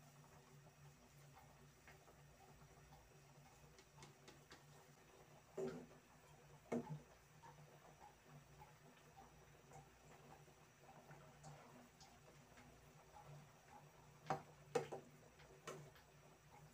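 Near silence broken by a few short clinks of a metal ladle knocking against a metal cooking pot as leaves are stirred into the soup: two about six to seven seconds in, and three more near the end.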